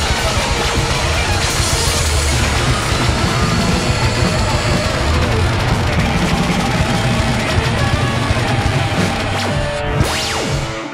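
Live rock band with electric guitar, bass, drums, keyboards, saxophone and trumpet playing a loud, dense wall of sound.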